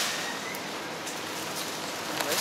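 A steady, even hiss like rain or rustling leaves, with a short click at the start and a faint thin whistle just after it.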